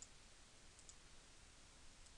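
Near silence, with faint computer mouse clicks: one at the very start and another a little under a second in.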